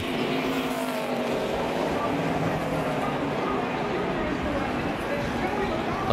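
NASCAR Cup stock car V8 engines running together on track, a steady drone with several engine tones rising and falling slowly over a constant noisy background.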